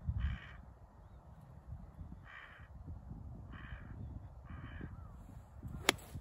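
A crow cawing four times, spaced a second or two apart. Then, just before the end, a single sharp click as a golf iron strikes the ball on a full swing.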